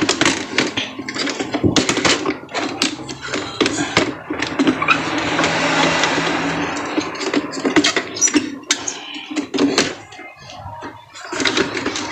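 Irregular clicks and knocks of plastic printer parts being handled, as the scanner unit of an Epson L3210 inkjet printer is held and settled onto the printer body.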